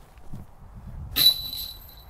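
A putted disc strikes a metal disc golf basket about a second in: a sudden metallic clang with a high ringing that dies away within about two-thirds of a second.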